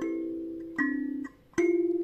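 A 17-key amiciSound kalimba (thumb piano) with metal tines on a mahogany body, plucked with the thumbs. Three notes sound a little under a second apart, each ringing on and fading, and the sound dies away almost completely just before the third.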